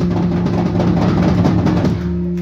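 Rock band playing live, heard through the mixing-desk feed: busy drumming over a held guitar and bass note, with no singing.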